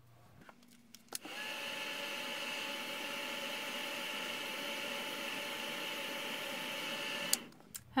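A small electric motor with a fan switched on about a second in, running steadily with a whine, and switched off abruptly near the end.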